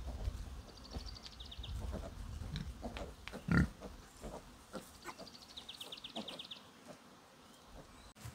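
Pigs grunting in a pen: short, scattered grunts, with the loudest one about three and a half seconds in.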